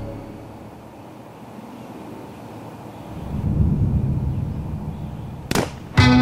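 A low rumble that comes up about halfway through, then a single sharp bang shortly before the end.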